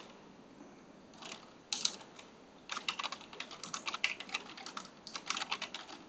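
Computer keyboard typing: a few separate keystrokes about a second in, then a quick run of keystrokes for about three seconds that stops shortly before the end.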